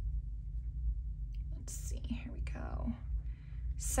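Soft whispering under the breath about halfway through, over a steady low hum.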